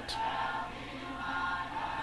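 Faint choir singing a gospel hymn in the background, with long held notes.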